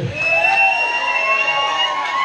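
Sustained high-pitched feedback ringing from the band's amplification, several steady tones held together and creeping slightly upward in pitch.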